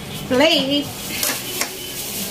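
A short wavering tone, the loudest sound, followed about a second in by the crackle of a thin plastic bag being handled.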